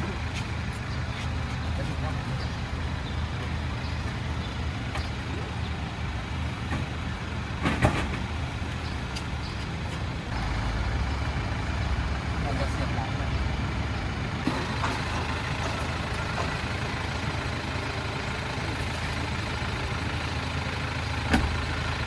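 Steady low mechanical rumble in a covered loading bay, with a sharp knock about eight seconds in as a wooden-crated toilet is loaded into the back of an SUV.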